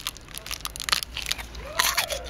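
Close-up biting and chewing of a Violet Crumble bar: its brittle honeycomb toffee centre in chocolate crunching and crackling in the mouth, a dense run of sharp little cracks.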